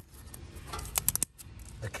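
Fingers handling the corroded steel shell of a refrigerant filter drier and picking off flaking paint: a quick run of about five small clicks and scrapes about a second in.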